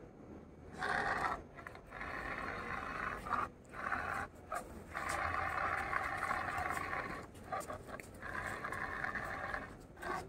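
Small geared DC motors of a two-wheel robot car whirring as it turns on paving, in several runs of one to two seconds with short pauses between them.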